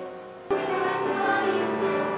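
Mixed choir of teenage voices singing. The choir comes in abruptly, louder, about half a second in, over quieter singing.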